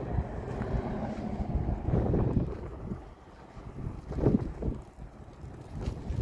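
Wind buffeting the camera microphone: an uneven low rumble that swells and drops in gusts.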